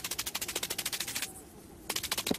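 Cartoon sound effect of rapid scurrying footsteps: a fast, even patter of sharp clicks, about sixteen a second, that stops after a little over a second and comes back in a short burst near the end.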